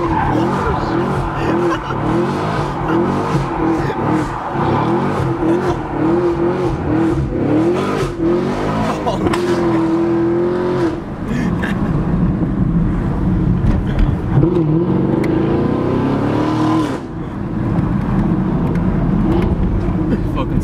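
Chevrolet Camaro SS's 6.2-litre V8 heard from inside the cabin, driven hard: the engine note climbs and falls again and again as it revs and backs off, holds one high note for about a second midway, then rises and falls a few more times. Laughter runs over it.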